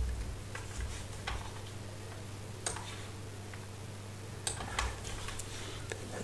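Scattered light clicks from computer input as the presenter scrolls through terminal output: about seven sharp ticks at irregular intervals, a few bunched near the end, over a steady low electrical hum.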